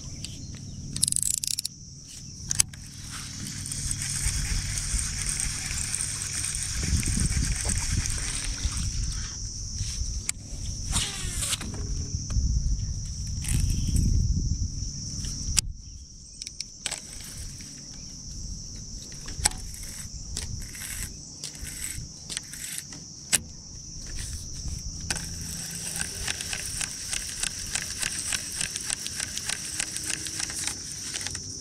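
Steady high-pitched buzz of insects that breaks off briefly a little past halfway, with scattered clicks from a baitcasting reel as line is cast and reeled in. A low rumble runs under the first half.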